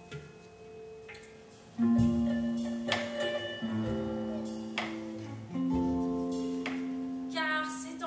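Slow, sparse live music: single notes picked on electric guitar, each ringing on for a second or more, a new note about every second. A woman's voice starts to sing near the end.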